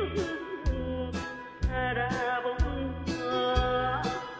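Korean trot song sung by a woman over a karaoke backing track, with a steady drum beat of about two hits a second and a bass line under the vocal melody.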